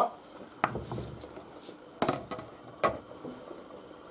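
A large metal pot lid being set over an earthenware cooking dish: a few short, sharp knocks, the loudest about two seconds in.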